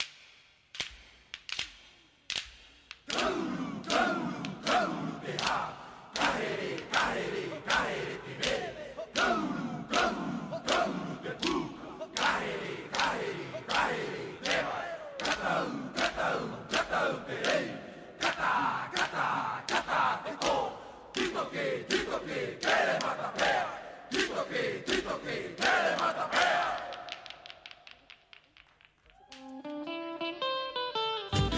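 Performance music of chanting and shouting voices over a steady beat of sharp percussive strikes, about two a second. It starts with a few scattered strikes, comes in fully after about three seconds and fades out near the end.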